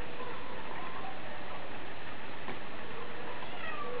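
Domestic cat meowing: a short, falling, high-pitched call near the end, over a steady background hiss.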